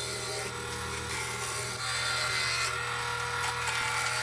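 Wood lathe spinning a maple log while a spindle roughing gouge cuts it, peeling the wood off in ribbons: a steady motor hum under a continuous rough cutting hiss that grows a little louder about halfway through.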